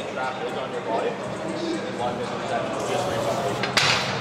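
Metal dumbbells clink once as they are set down on a dumbbell rack near the end, over faint voices in the background.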